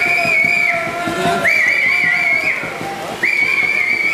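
Three long, high whistles, each about a second long, the middle one wavering, cheering the swimmers on during the race.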